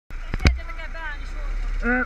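Hungarian voices talking near the microphone, faint at first and closer near the end. Two sharp knocks about half a second in, as the kart's onboard camera is handled, over a steady low rumble.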